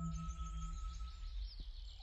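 Birds chirping over a steady low background rumble. A held low music drone from the soundtrack fades away within the first second or so.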